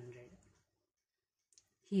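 A woman's voice trails off, followed by about a second of dead silence broken by one faint click, then her speech starts again near the end.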